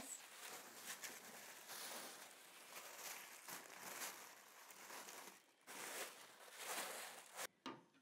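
Acid-free tissue paper rustling and crinkling faintly as gloved hands smooth it around the inside edges of a storage box, cutting off suddenly near the end.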